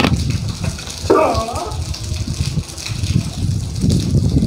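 Gusty cyclone wind buffeting the phone's microphone as a heavy, uneven rumble, with rain falling on the rooftops. A brief voice-like sound comes in about a second in.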